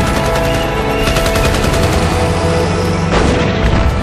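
Battle sound effects from a war film: rapid gunfire over music, with a loud blast about three seconds in.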